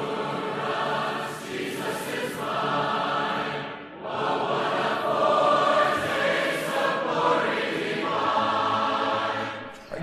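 A choir singing held chords in two long phrases, with a short break about four seconds in, fading out near the end.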